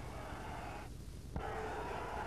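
Low, steady background noise from an old broadcast recording of an arena. The upper part of the noise cuts out for about half a second around a second in and comes back with a single click.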